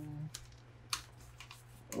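A few light, sharp taps and clicks of fingers placing and pressing a sticker onto a card on a cutting mat, the clearest about a second in.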